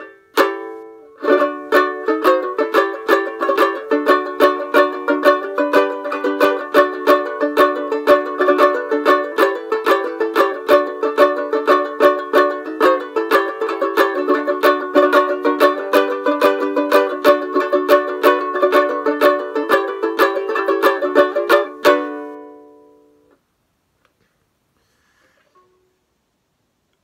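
Phil Cartwright banjo ukulele with a metal pot and resonator, tuned to D, strummed in a brisk, steady rhythm of chords. The playing stops about 22 seconds in and the last chord rings out briefly.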